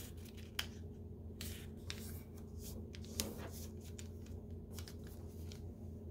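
Origami paper being folded and creased by hand: faint, scattered crinkles and rustles of the sheet, over a low steady hum.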